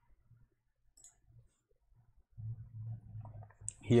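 Faint computer mouse clicks against near silence, then a low hum late on.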